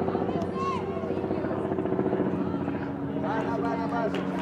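A steady, pulsing engine drone that drops in pitch about halfway through, with short distant shouted calls over it.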